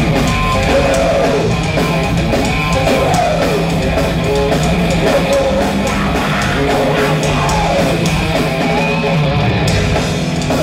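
Heavy metal band playing live, with distorted electric guitars and a pounding drum kit at a steady loud level, heard through the PA from the audience.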